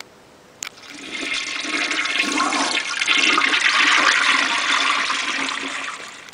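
Toilet flushing behind a closed bathroom door: a click of the handle, then rushing water that builds over about two seconds, runs loudly, and starts to ease off near the end.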